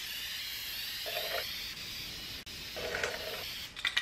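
Aerosol spray paint can spraying a coat onto a truck's bedside panel: a long steady hiss, cut off briefly about halfway through, then a second pass that stops just before the end.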